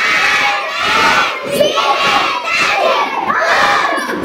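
A group of children chanting loudly in unison in a few short phrases, reciting together the Arabic letters and vowel marks of a Quran reading lesson.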